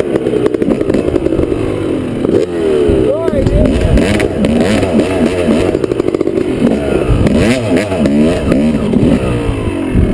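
Dirt bike engine revving up and down in short bursts of throttle at low speed, as the bike is worked along a steep, narrow ridge trail.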